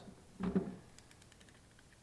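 Faint, light clicks of a small hand tool working at the heat shrink on the battery-terminal wires inside an opened cordless drill handle, after a short vocal "uh" about half a second in.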